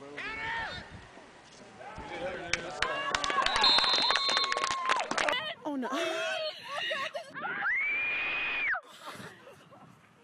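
Youth football players' helmets and pads clattering in a quick run of sharp knocks amid shouting, with a short high steady tone in the middle. After a cut, voices and one long high scream about eight seconds in.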